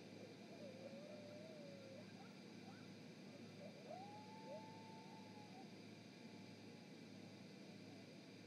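Faint, distant howling: one wavering call about half a second in, then a second call that sweeps up steeply and holds a steady high note for about a second and a half. A steady low electrical hum runs underneath.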